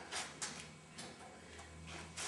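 A few faint clicks and light handling noise as hands grip a mountain bike tyre on its rim, with a low steady hum joining about three quarters of the way through.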